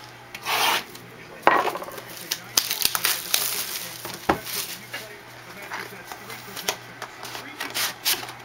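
A cardboard trading-card hobby box being handled and its lid slid off, with rubbing and scuffing of cardboard against cardboard and the desk, and a sharp tap about four seconds in.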